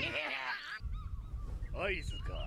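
Anime episode soundtrack: a character's voice shouting, then from about a second in a low rumble with short pitched cries and a brief rising yell near the end.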